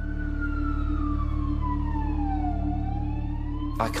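Police car siren wailing: one slow fall in pitch and the start of a rise, over a steady low drone.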